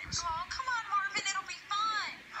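High-pitched, pitch-shifted puppet character voices talking quickly, played back through a TV's speaker.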